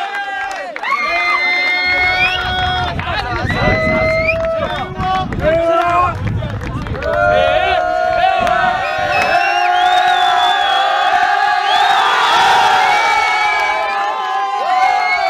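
A crowd of voices cheering and chanting in celebration, with long held calls that slide upward at their ends.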